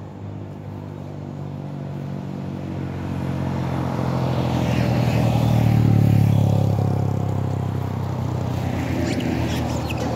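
Motor vehicles passing on the road: an engine's sound builds to its loudest about six seconds in, then fades as another vehicle approaches near the end.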